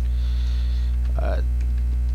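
Loud, steady electrical mains hum with a buzzy ladder of overtones on the recording. A short spoken 'uh' comes about a second in.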